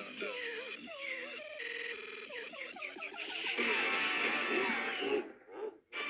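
YouTube Poop–edited talk-show audio: chopped, stuttering voices mixed with music. The sound cuts out briefly near the end.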